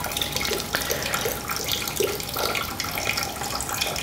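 Steady hiss of running water in a small tiled bathroom.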